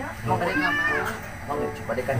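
A cat meows once, a drawn-out call that rises and then falls, with voices speaking around it.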